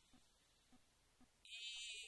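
Near silence for about a second and a half, then a woman's voice holding a drawn-out hesitant "e..." near the end.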